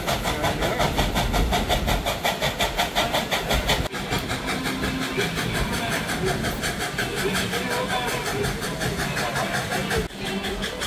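A 1938 Baldwin steam locomotive pulling an open-car excursion train, heard from the passenger cars: a rapid, even beat over a steady rumble of the moving train, with a brief break about four seconds in. Passengers are chattering in the background.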